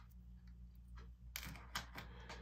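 A few light clicks and taps of small metal spoon lures being handled and set down, over a faint steady hum. The clicks come in the second half.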